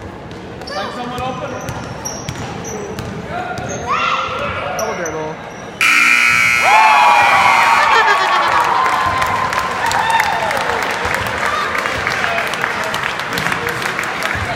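A gym scoreboard buzzer sounds suddenly about six seconds in as the game clock runs out, followed by cheering, shouting and clapping. Before it, a basketball bounces and sneakers squeak on the gym floor while children call out.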